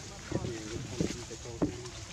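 Several short vocal sounds in a row, each with a wavering, bending pitch, over a steady outdoor background.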